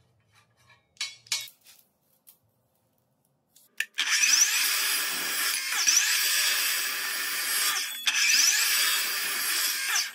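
Dekton metal-cutting chop saw cutting through rectangular steel tube, starting about four seconds in with a loud, hissing screech, a brief break just before the eighth second, then cutting again. Before it, a few light metallic clicks of small steel parts being handled.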